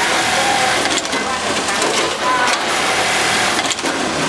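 JUKI MOL-254 industrial sewing machine running steadily while sewing, with voices in the background.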